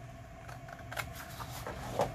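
Scissors cutting through scrapbook paper: a few quiet, crisp snips, the clearest about a second in and another at the end.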